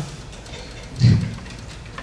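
Faint audience laughter during a pause after a punchline, heard as a low steady crowd haze, with one short low vocal sound about a second in.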